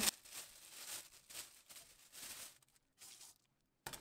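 Faint rustling and crinkling of a clear plastic roasting bag being handled, in a few short bursts.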